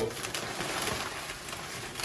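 Brown packing paper and a plastic bag rustling and crinkling, a steady papery crackle as a part is dug out of a cardboard box.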